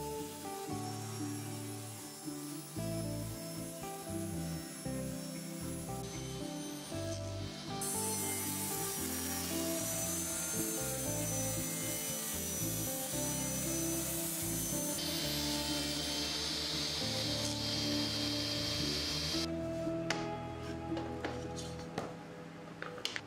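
Table saw running and ripping a sheet of green moisture-resistant MDF, with a high steady whine and a hiss from the blade cutting that is loudest in the middle. The saw stops about two seconds before the end.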